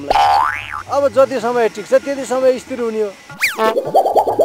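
Cartoon-style comedy sound effects: a quick rising boing-like slide at the start, a man's speech, then a fast falling whistle-like glide near the end.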